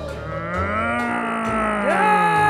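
A puppet Frankenstein's monster giving a long, drawn-out, moaning groan that is held through the whole two seconds and bends slowly in pitch, with a second groan rising just before the end.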